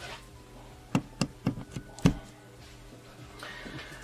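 A handful of short, light knocks and taps, about five within a second, from a wooden plank made into a homemade wire-string guitar being handled.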